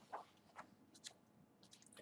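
Near silence: room tone with three faint, brief clicks in the first second.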